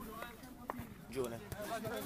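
Faint voices in a lull between louder talk, with a single sharp knock about two-thirds of a second in.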